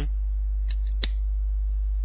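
A cigarette lighter being clicked while lighting a cigarette: a faint click, then a sharp one about a second in. A steady low hum runs underneath.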